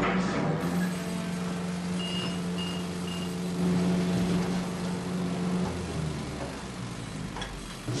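Garbage truck running with a steady drone, with three short high beeps about two seconds in, about half a second apart. Near six seconds the drone gives way to a lower rumble.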